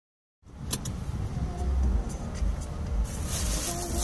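Low rumble inside a Honda Civic's cabin, with two sharp clicks just under a second in. From about three seconds in, a plastic shopping bag rustles close to the microphone.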